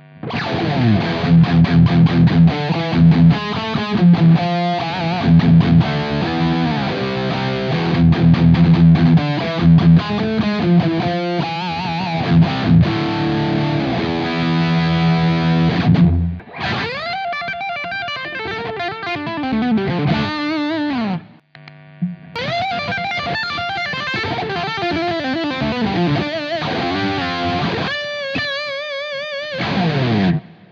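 Electric guitar through stacked overdrive pedals, gain-staged so the lower-gain overdrive feeds the higher-gain one. It plays distorted chords and riffs for about sixteen seconds, stops briefly, then plays single-note lead lines with string bends and vibrato.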